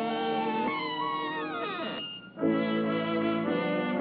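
Orchestral cartoon score with brass. About a second in, the notes slide steeply downward and break off for a moment in the middle, then the band comes back in with held chords.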